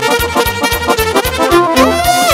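Romanian lăutărească party band playing an instrumental sârba: accordion and brass over a fast, steady beat.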